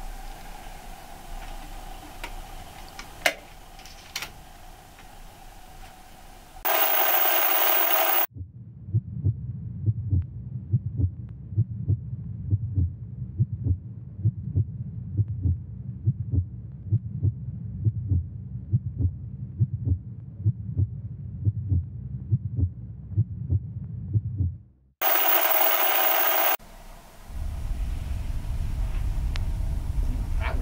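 A burst of loud video static, then a low, rhythmic pulsing like a heartbeat, about two to three beats a second, for some sixteen seconds. A second burst of static cuts it off, and a steady low hum follows.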